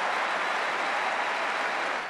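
Tennis crowd applauding steadily after a point is won.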